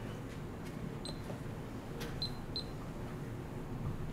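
Quiet room tone of a meeting chamber: a steady low hum with a few faint clicks and three or four short, high blips.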